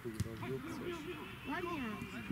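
Indistinct voices of people talking, with a higher-pitched voice about one and a half seconds in.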